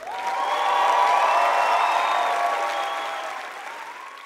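Studio audience applause breaking out suddenly as the song ends, loudest about a second in and fading over the last second.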